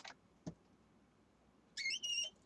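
A single light click, then near the end a short, high-pitched squeak from a handheld adhesive tape runner being rolled over paper.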